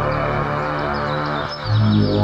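Ambient synthesizer music: layered held tones with short, high gliding chirps over them. About one and a half seconds in, a deep sustained bass note comes in and the music swells louder.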